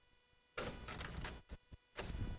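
Faint computer keyboard keystrokes: a short run of taps starting about half a second in, then two separate clicks near the end.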